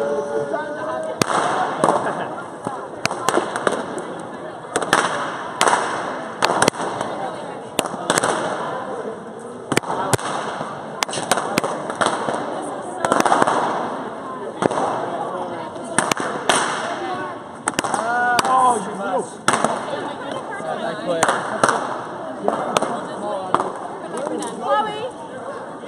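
Balloons from a balloon-sculpture dragon being popped by a crowd: dozens of sharp pops at irregular intervals, sometimes several a second, over a constant hubbub of excited voices.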